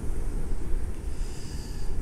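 Wind buffeting a phone's microphone: an uneven low rumble that swells and dips, in a strong wind.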